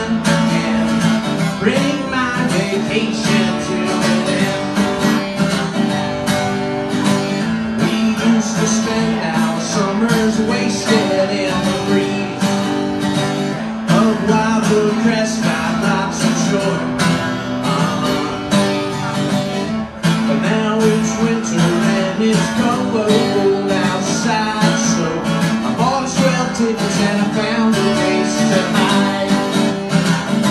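Acoustic guitar strummed in a steady rhythm during a live song, with a brief drop in level about two-thirds of the way through.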